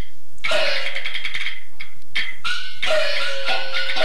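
Peking opera music: a high-pitched jinghu fiddle plays sliding melodic phrases. It breaks off briefly at the start and again about two seconds in.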